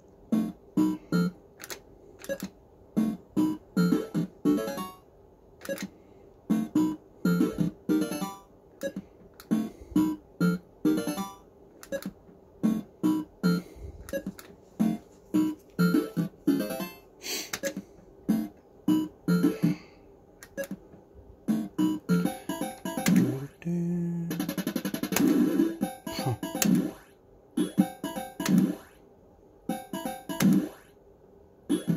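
Action Note fruit machine playing its electronic tune of quick short notes and bleeps as its reels spin and stop, with a longer held passage of sound about three quarters of the way through.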